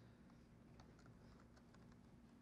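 Faint typing on a laptop keyboard: a scattering of light, irregular key clicks starting a little under a second in, over a steady low hum.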